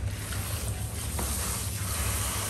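Water from a handheld shampoo sprayer running steadily onto hair and splashing into a salon basin, with the stylist's hands working through the wet hair.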